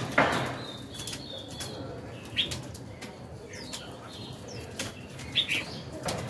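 Caged oriental magpie-robin fluttering its wings and moving about the cage, with the loudest flurry of wingbeats right at the start. Two more short, sharp flutters come about halfway through and near the end.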